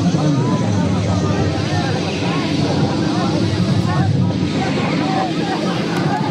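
Dense crowd babble: many voices talking and calling out over each other at once, with a steady low rumble underneath.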